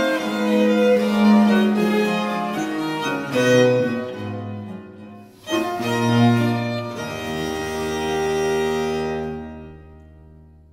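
Baroque chamber music for violins and low bowed strings. The music breaks off briefly about five seconds in, resumes, then settles on a long held chord over a low bass that dies away near the end.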